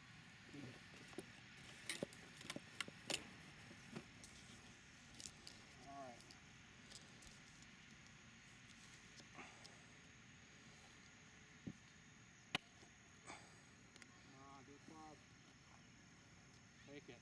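Golf iron striking the ball on a chip shot: one sharp click about three-quarters of the way through, the loudest sound, over quiet outdoor ambience. A handful of lighter clicks come in the first few seconds.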